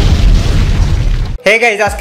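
Explosion sound effect: a loud boom of rumbling noise that cuts off abruptly about a second and a half in.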